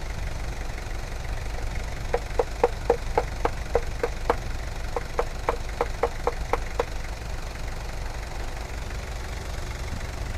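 Kia K3000's diesel engine idling steadily with its oil filler cap being taken off for a blow-by check, which it passes. For several seconds in the middle, a run of sharp, evenly spaced clicks at about four a second sounds over the idle.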